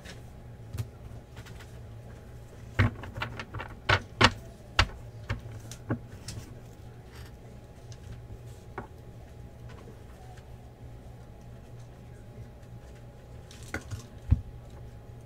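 Trading cards being handled on a table: a quick run of sharp taps and clicks a few seconds in as cards are set down and stacked, then single clicks now and then over a steady low background hum.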